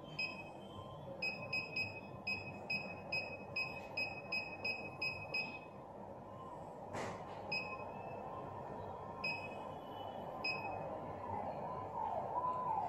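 Keypad beeps of a Balaji BBP billing machine. A quick run of about a dozen short, high beeps comes as keys are pressed in succession, followed by a few single beeps a second or two apart. There is one sharp click about seven seconds in.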